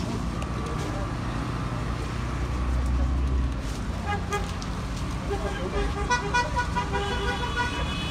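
Road traffic running past, with a car horn sounding in short repeated toots in the last couple of seconds. Voices can be heard in the background.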